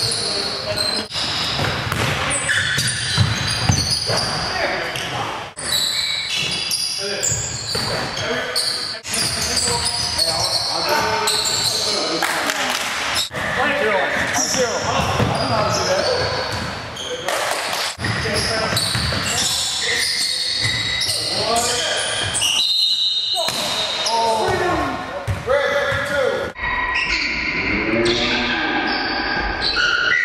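Live sound of an indoor basketball game: the ball bouncing on the hardwood floor and players calling out, echoing in a large gym.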